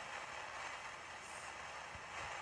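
Faint, steady hiss of recording noise, held up on screen as a spirit's whisper.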